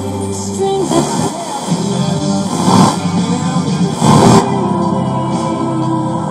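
FM radio broadcast from a Marantz 2250B receiver being tuned across the dial. Music breaks up into hiss and passing stations about a second in, then settles on music again near the two-thirds mark.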